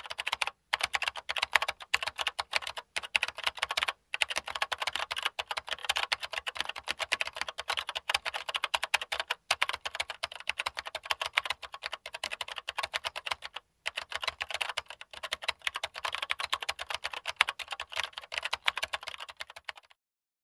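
Typing sound effect: fast, continuous keyboard clicking that follows text being typed out letter by letter, broken by a few short pauses.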